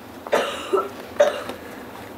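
A man coughing: one sharp cough about a third of a second in, then a couple of shorter coughs in the next second.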